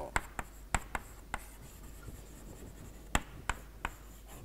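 Chalk writing on a blackboard: sharp taps of the chalk stick against the board, several in the first second and a half and three more near the end, with faint scraping between.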